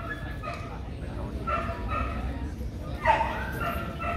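A dog whining and yipping in a few short, high-pitched calls over a low murmur of crowd chatter.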